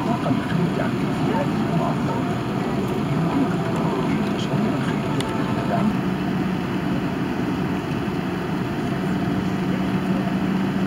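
Steady cabin noise inside an Airbus A380 taxiing before take-off: a constant rumble of engines and air conditioning. A low steady hum joins about six seconds in.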